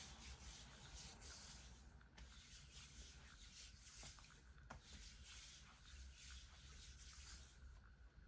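Faint swishing of a hand rubbing body oil into the bare skin of an arm, in repeated back-and-forth strokes.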